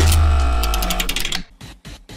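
A short musical transition sting: a deep bass hit under a held chord that fades away over about a second and a half, with a quick run of bright ticking notes partway through, leaving a few faint clicks near the end.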